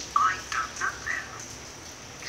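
A voice speaking a few short syllables in the first second or so, thin-sounding with little low end, like a recorded telephone conversation, then a pause.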